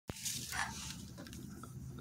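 A sharp click right at the start, then faint rustling handling noise as a phone camera is moved about, with a few faint ticks.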